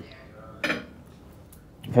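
A single short clink of cutlery against a plate, a little over half a second in, with speech starting near the end.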